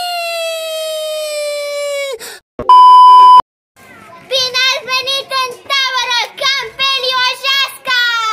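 A child's long held yell, slowly falling in pitch, lasting about two seconds; then a loud, steady edited-in beep tone of under a second; then a girl talking quickly.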